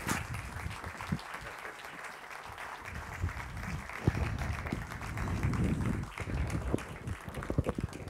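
Audience applauding steadily, with a few low thumps mixed in.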